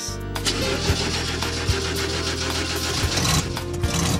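An old pickup truck's engine starting about half a second in and then running, with background music underneath.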